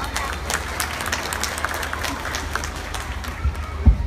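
Audience applauding, with many quick claps that thin out after about three seconds. A loud low thump comes near the end.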